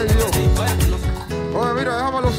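Live band music with a singer's voice over it: a beat with repeated bass and drum hits stops about a second in, leaving held chords under a sliding vocal line.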